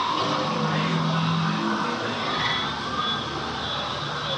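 Na'vi River Journey's ambient forest soundscape: a steady rushing hiss with gliding whistle-like calls over it and a low held tone from about half a second to two seconds in.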